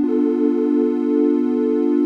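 HALion Sonic 7 virtual analog synth playing a steady held sound from a triangle-wave oscillator in multi-oscillator mode, three voices detuned against each other.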